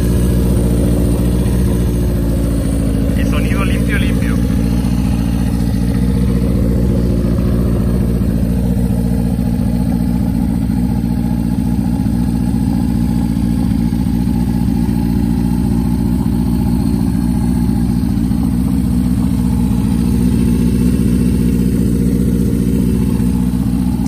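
A 1977 Honda CB400 Four's air-cooled inline-four engine idling steadily, started warm without the choke.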